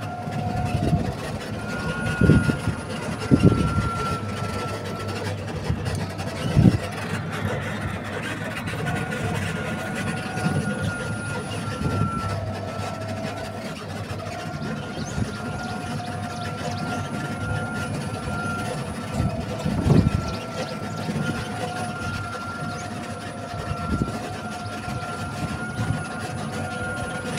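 A vehicle's steady motor whine at two pitches that waver slightly with speed. A few low thumps of wind or bumps on the microphone come through, the strongest about two, three and a half, seven and twenty seconds in.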